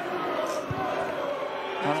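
Stadium crowd noise: a steady murmur of many voices from the stands, with one brief low thump about two-thirds of a second in.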